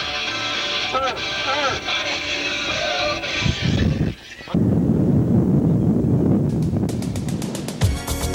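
Camcorder sound from inside a moving car: street and traffic noise with a few short wavering tones. About four seconds in it cuts off abruptly and gives way to the rough hiss and rumble of a videotape's blank end, with rapid clicks building near the end.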